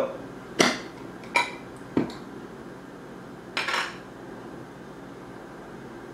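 A metal screw lid being twisted off a glass jar of marinated mushrooms: three sharp clicks and knocks in the first two seconds, then a brief rushing noise.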